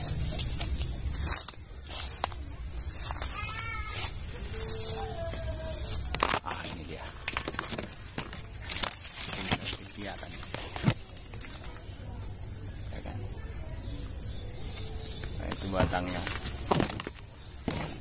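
Mango leaves and twigs rustling and brushing against a handheld phone as it is pushed in among the branches, giving many short scrapes and knocks. A steady high hiss runs underneath, with a short chirping call about four seconds in.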